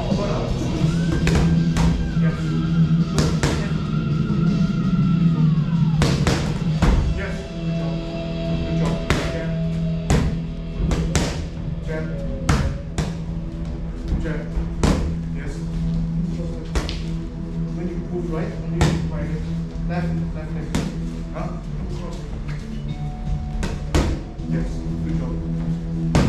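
Music playing over the sharp, irregularly spaced smacks of boxing gloves striking pads and gloves, several a second at times.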